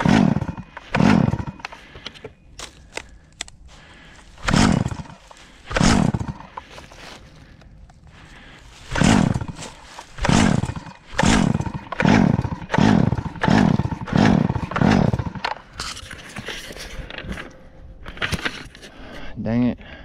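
Craftsman chainsaw's recoil starter pulled again and again, about fourteen short whirring pulls, a few apart at first and then in quick succession, without the engine catching and running. The owner puts the hard starting down to a carburetor issue.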